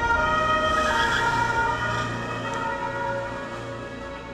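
Closing film soundtrack of several high tones held steadily over a low hum, slowly fading out.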